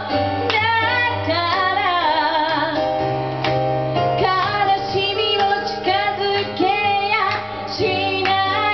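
A woman singing a pop song live into a microphone, accompanied by a Roland keyboard playing sustained chords.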